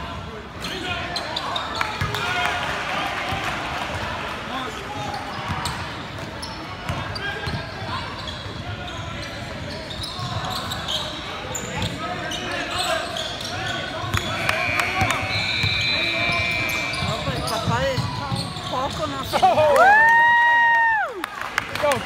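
Indoor basketball game sounds: spectators and players talking and calling out over the ball bouncing on the hardwood floor, with sneakers squeaking. Near the end comes one loud, high, drawn-out squeal lasting just over a second.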